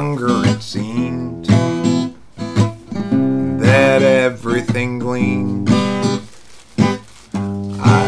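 A man singing to his own strummed acoustic guitar, a slow song with short pauses between phrases.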